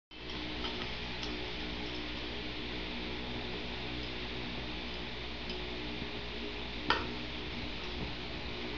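Steady low background hum with faint level tones, and one short sharp click about seven seconds in.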